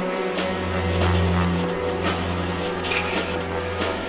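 Deep dubstep playing from a vinyl mix: a heavy sub-bass note swells in about a third of a second in and holds, under sparse drum hits and sustained synth layers.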